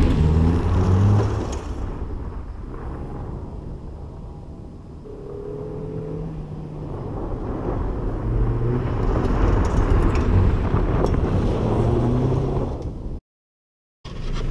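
Small sedan driven hard on a dirt course. The engine fades as the car goes away, then grows louder as it comes back at speed, and the sound cuts off abruptly about a second before the end.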